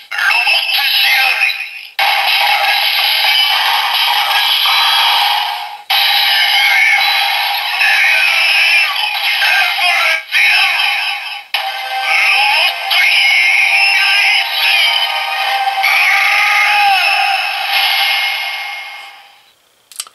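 Bandai DX Sclash Driver toy transformation belt, loaded with the Robot Sclash Jelly, playing its electronic voice call-outs and sung music through its small speaker, thin and without bass. The sound stops and restarts several times, then fades out near the end.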